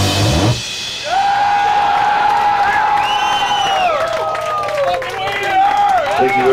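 Live heavy rock band playing full out with drums, cutting off sharply about half a second in; an electric guitar amplifier then rings on with a held feedback tone that slides and bends in pitch as the song ends.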